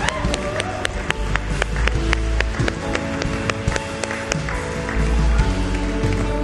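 Live band music, sustained keyboard and electric guitar chords, with many sharp claps over it.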